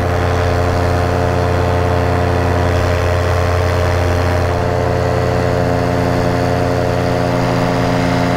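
Paramotor engine and propeller running steadily at cruise throttle in flight, one even pitch that doesn't change.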